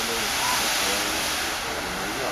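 Steady rushing roar of a burning substation power transformer, even and unbroken.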